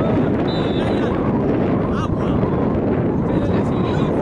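Wind rumbling steadily on the microphone, with players' voices calling faintly in the background.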